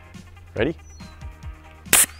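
A single short, sharp blast of CO2 gas from a bike-tyre inflator valve near the end, firing a load of small water beads out of a metal straw.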